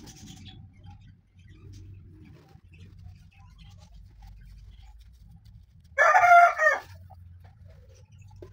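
Soft rubbing of a cloth over a juicer's plastic motor base as it is wiped clean. About six seconds in, a loud animal call with a wavering pitch cuts in for just under a second, the loudest sound.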